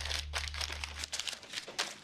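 Sheets of drawing paper being crumpled and crinkled by hand in a run of quick crackles. A low steady tone underneath fades out about halfway through.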